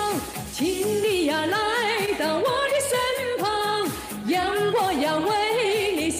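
A woman singing a Mandarin pop song over a backing track with a steady beat.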